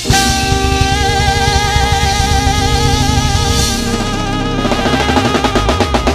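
Live jazz-fusion band playing: a saxophone holds a long note with vibrato over busy snare and bass-drum fills on the drum kit, with keyboard and electric bass underneath.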